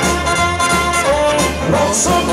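Live rock-and-roll band playing an instrumental passage between vocal lines: saxophone carrying held, sliding melody notes over electric guitars, bass and drums.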